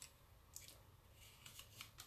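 Near silence with a few faint ticks and paper rustles: a small backing sheet of adhesive metallic pearls being handled while a pick-up tool lifts the pearls off it.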